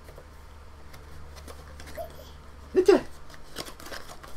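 Faint scrapes and small clicks of a small cardboard blind box being opened by hand.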